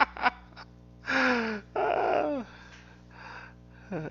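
A man laughing breathily: two drawn-out, airy laughs about half a second long each, falling in pitch.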